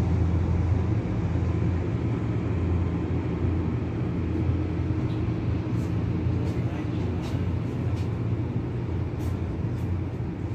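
Steady low rumble of the cruise ship Ovation of the Seas under way, heard from a high balcony. A few faint high ticks come through in the second half.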